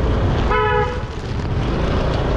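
A vehicle horn gives one short, steady toot about half a second in, over the steady low rumble of a moving scooter.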